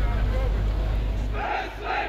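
Ranks of soldiers shouting together in unison, two short loud shouts near the end, over a steady low rumble.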